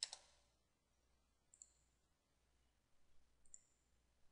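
Near silence with faint clicks from the computer being operated: a quick double click at the start, then a few fainter single clicks later on.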